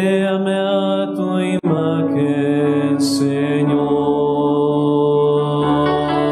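A man singing a slow worship song in long held notes over sustained electronic keyboard chords. The sound drops out for an instant about a second and a half in.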